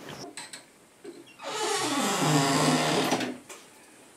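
A small motor running steadily for about two seconds, starting a little over a second in and stopping shortly before the end.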